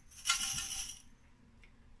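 Small glass jar filled with coffee beans shaken as a homemade maraca: a dense rattling swish for about a second that then dies away.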